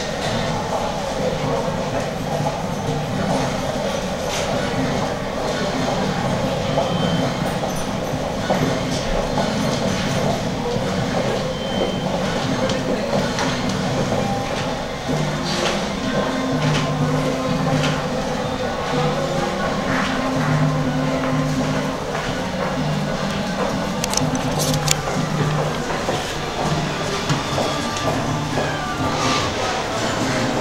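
A steady, loud, rumbling din with low held notes that change in steps from about halfway through, and voices murmuring underneath.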